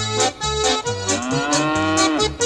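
A long cow's moo about a second in, rising slightly in pitch and then dropping off at the end, used as an effect in a comic song about a cow. Under it runs bouncy backing music with alternating bass notes.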